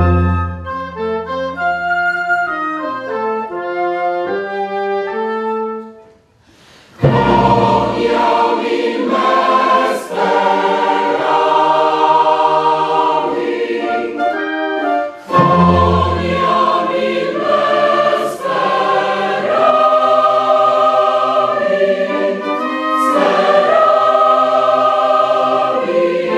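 Mixed choir singing with an orchestra in a classical choral piece. A lighter passage of separate held notes stops about six seconds in; after a brief pause the full choir and orchestra come in together, with a strong bass entry again about halfway through.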